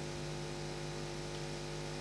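A steady electrical hum, several level tones held without change, under a faint hiss.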